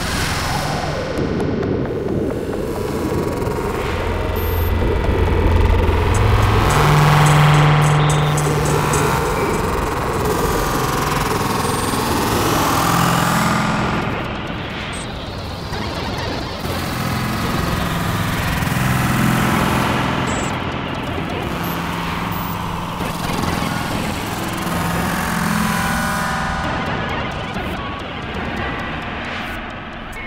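Experimental electronic noise and glitch music: a dense, crackling wash of noise with low droning tones that swell and fade beneath it, loudest about seven seconds in.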